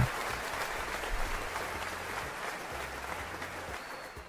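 Applause: a steady, even noise that slowly fades, with a faint low hum coming and going.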